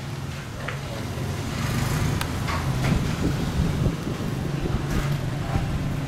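A steady low rumble that builds over the first couple of seconds and then holds, with a few faint clicks.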